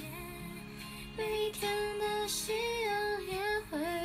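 A woman singing a slow melody in long held notes over backing music, starting about a second in.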